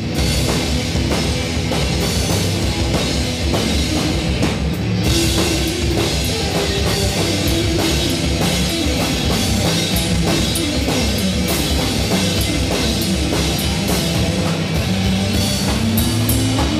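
Rock band playing live and loud: electric guitar, electric bass and drum kit, with busy drumming under a guitar line that steps up and down in pitch.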